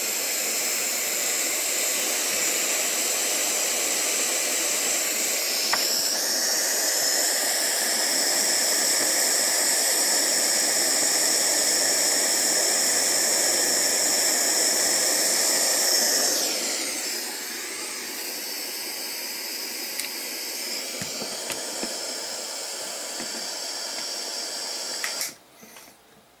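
Handheld gas soldering torch burning with a steady hiss as its flame heats a twisted wire splice for soldering. About six seconds in, a higher whistling tone joins the hiss. From about two-thirds of the way through it runs quieter, and it cuts off near the end.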